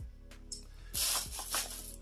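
Rustling and rubbing of products and packaging being handled, starting about a second in, with a few light clicks before it. Soft background music runs underneath.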